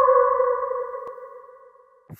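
The tail of a wolf howl sound effect: one long tone that slides slightly down in pitch and fades away.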